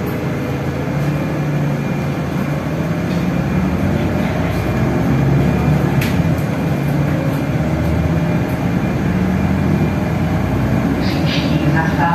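City bus cabin ride noise: the engine and drivetrain running steadily with road noise as the bus drives along, and a single sharp click about halfway through.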